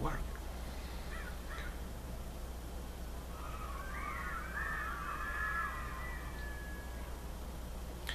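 A bird calls with a wavering, warbling call that lasts about three seconds, starting a little before the middle. A steady low hum runs underneath.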